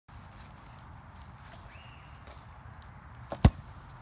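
A thrown rubber ball comes down and hits the lawn with a single sharp thud about three and a half seconds in, over a quiet outdoor background.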